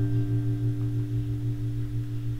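Telecaster-style electric guitar letting a chord ring out: a strong low note and several higher notes held steady, the higher ones fading about halfway through.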